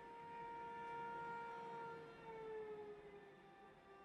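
Bowed strings of a cello quintet holding soft, sustained notes; about two seconds in the main pitch slides slowly downward.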